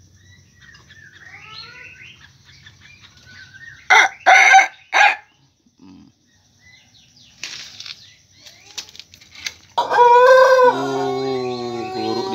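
Pelung rooster crowing: a long, deep crow begins about ten seconds in, steps down in pitch and is held on past the end. Before it come faint chirping and, about four seconds in, three loud short bursts.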